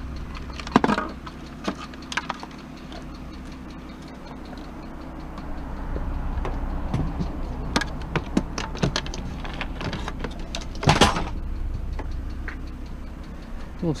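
Small plastic speakers and their cords being picked up and handled, with scattered light clicks and knocks and one louder clatter about eleven seconds in, over a low steady hum.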